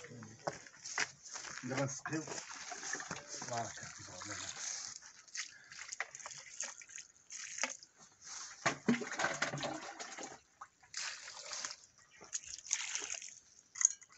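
Water sloshing and trickling in a small plastic bucket as it is handled over garden soil, among scattered rustling and clicks.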